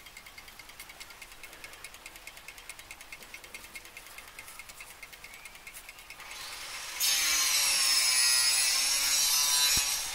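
A mechanical clock movement ticking fast and evenly, about six ticks a second, each with a slight metallic ring. About seven seconds in, a much louder rasping, scraping noise starts suddenly and runs almost to the end.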